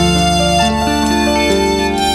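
Instrumental dangdut music for a singa procession: a melody of held notes stepping from pitch to pitch over a steady low bass.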